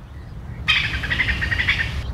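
A bird calling: a rapid run of high chirps that starts suddenly about two-thirds of a second in and cuts off abruptly, over a steady low rumble.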